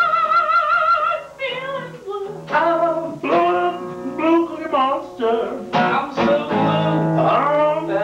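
Acoustic guitar strummed under a man singing an improvised song, opening with a long held, wavering note and then going on in short sung phrases.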